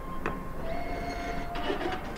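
Receipt printer at a restaurant register running as it prints a receipt, with a click about a quarter second in, then a steady whir.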